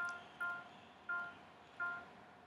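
Music notation software (Finale) playing a short synthesized note each time a quaver is entered: the same note, F, four times at uneven intervals.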